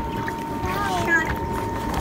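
Air rushing steadily out of a large tear in an inflatable water slide, forced through by the slide's running blower, with a constant hum from the blower behind it.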